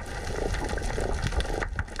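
Underwater ambience picked up by a camera under water over a rocky reef: a steady low rumble of moving water with faint scattered crackling clicks.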